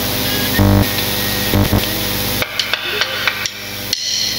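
Live rai concert music with loud percussive hits. A little past halfway the music drops away, leaving a few scattered knocks.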